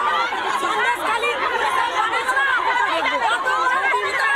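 A crowd of women all talking and shouting at once in protest, their voices overlapping into a steady, loud din with no single voice standing out.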